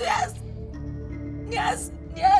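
A woman speaking in short, tearful phrases over low, steady background music.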